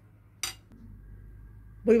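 A single short, sharp clink of a wire whisk against the crockery as it is taken out of the bowl of flan mixture.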